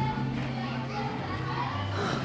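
Background din of children playing and talking, over background music whose low bass notes are held steady and step down in pitch near the end.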